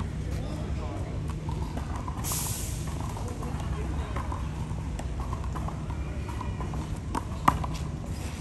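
Open-air ambience of a park court: a steady low rumble with faint distant voices, a brief hiss about two seconds in, and a single sharp smack near the end.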